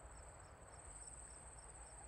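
Faint crickets chirping in a steady high trill, with a soft regular pulse, as night-time ambience.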